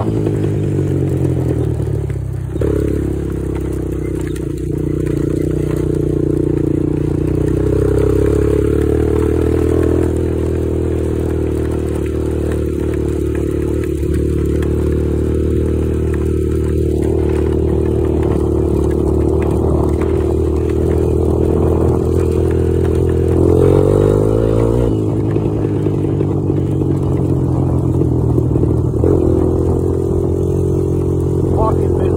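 Honda TRX250EX quad's single-cylinder four-stroke engine running at a steady cruise, its pitch shifting briefly as the revs change a few seconds in, about three-quarters of the way through, and near the end.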